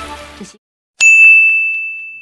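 Rain from the film's soundtrack cuts off about half a second in. After a short silence, a single sharp bell-like ding strikes about a second in and rings on as one high steady tone, fading slowly, with a few faint echoing taps.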